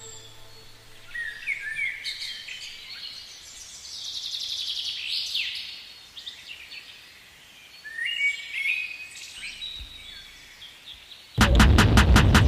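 Birds singing: scattered high chirps, quick sweeps and trills from several calls. Near the end, loud music with a fast, even pulse starts abruptly.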